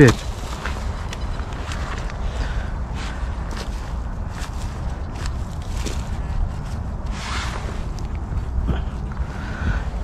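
Digging in forest soil and leaf litter to unearth a metal-detector target: scraping, rustling and scattered knocks, with a longer scrape about seven seconds in.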